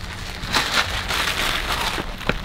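Crinkly rustling and crackling of a white paper sheet being handled, a steady patter of tiny ticks.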